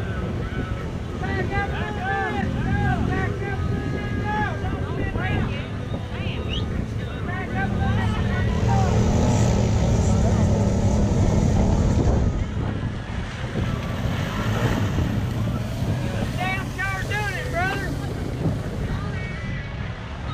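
Off-road vehicle engines revving as they push through a mud pit, loudest midway through, with voices calling out over them early on and again near the end.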